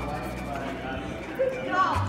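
A person's short vocal sound near the end, over faint room noise in a large hall.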